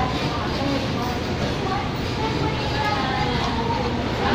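Steady restaurant background noise, an even hum with faint voices of other people talking at a distance.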